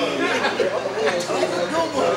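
Men's voices chattering, several talking over one another, with no words clear.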